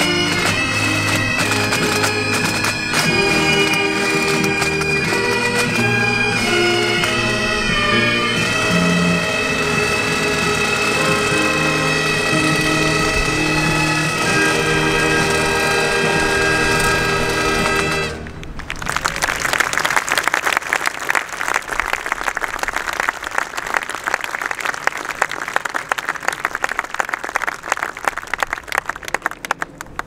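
A pipe band of bagpipes and drums plays, with the drums beating through roughly the first eight seconds. The pipes cut off sharply about eighteen seconds in, and applause follows.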